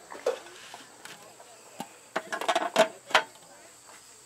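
Clear plastic cake dome and its base being handled: a few sharp plastic clicks and knocks, a quick cluster of them just after two seconds and the loudest a little after three.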